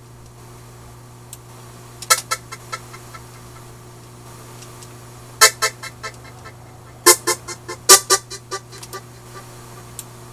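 Synthesizer pattern from an R&B beat playing back from the sequencer: short, bright, plucky synth notes in three quick clusters, about two seconds in, about five seconds in and from about seven to nine seconds, over a steady low hum.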